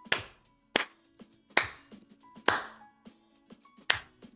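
Slow hand claps, five of them about a second apart with a longer pause before the last, over faint music.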